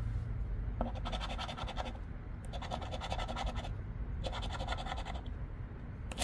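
Scratching off the latex coating of a scratch-off lottery ticket in three short bursts of rapid scraping strokes, each about a second long.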